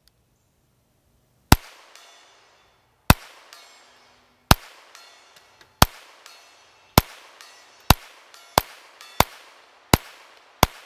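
Nine shots from a Ruger Mark IV 22/45 .22 LR pistol fired one at a time at steel targets at 100 yards. The first shot comes about one and a half seconds in, and the shots start about a second and a half apart and quicken to well under a second apart. Each shot is followed a fraction of a second later by a faint tick from the bullet striking steel.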